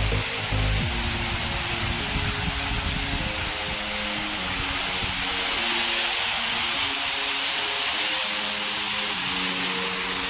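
Water falling in sheets and drops from a digital water curtain that writes letters and patterns with its drops, a steady rush, with music playing under it.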